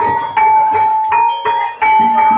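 Javanese gamelan-style music: struck metal keyed-percussion notes ringing on one pitch, hit about three times a second over drum beats.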